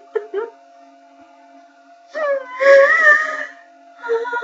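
A woman's voice: a few short catching sounds at the start, then, after a pause, one long wavering wail, weeping in the middle of an emotional song.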